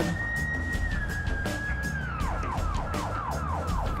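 Emergency vehicle siren: a high steady tone that drops slightly, then about two seconds in switches to quick falling sweeps, about three a second, over a low traffic rumble.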